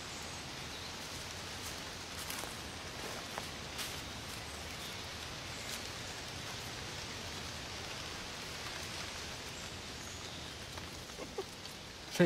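Steady outdoor ambience, an even soft hiss, with a few faint crackles of dry fallen leaves underfoot in the first half.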